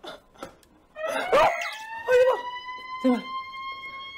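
A young man's frightened yelps and whimpers, short cries in quick succession. From just under two seconds in, a long, steady high tone rises slowly in pitch underneath them.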